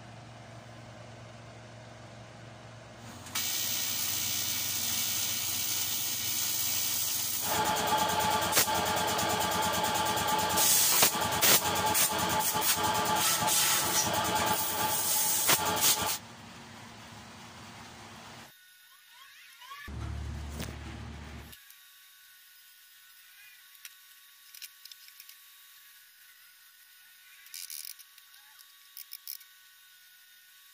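TIG welding on aluminium: a loud steady hiss starts about three seconds in, then turns into a harsher buzz with crackling from about eight seconds, and cuts off sharply about halfway through. Only faint knocks and clicks follow.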